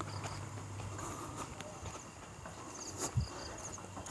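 Night insects chirring: a faint steady high chirr with short trains of rapid chirps, and a faint low thump about three seconds in.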